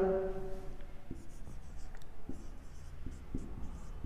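Marker writing on a whiteboard, a run of short, light strokes as a bullet mark and a word are written.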